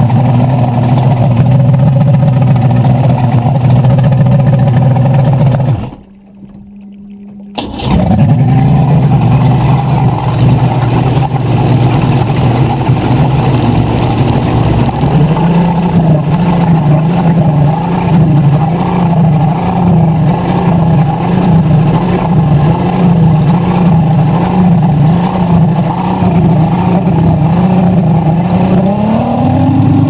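Needle-nose STV drag boat's engine idling, its sound dropping away sharply for about a second and a half some six seconds in before picking up again. From about halfway through its note wobbles regularly, and near the end it rises in pitch as the throttle opens.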